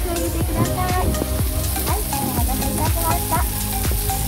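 Hamburger steak and vegetables sizzling loudly on a hot iron serving plate set down at the table, a steady hiss, under background music with a steady beat.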